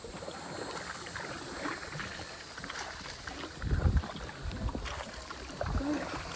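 Paddling in an inflatable canoe: paddle strokes in the water and water swishing along the hull, with a short low thump about four seconds in.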